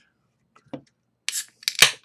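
A 16-ounce aluminium beer can being cracked open: a short hiss, then a sharp snap of the tab near the end, with a few small clicks.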